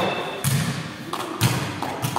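Sepak takraw ball being struck during a rally: two sharp hits about a second apart, each ringing on in the echo of a large sports hall.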